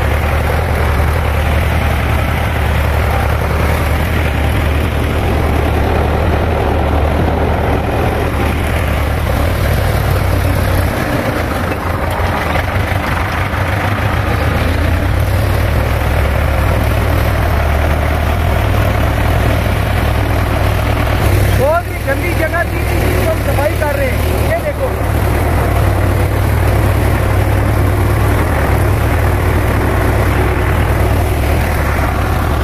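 Belarus tractor's diesel engine running steadily with a low drone, heard close up from on the tractor as it works through a weedy plot. About three-quarters of the way through, a brief voice-like call rises over the engine.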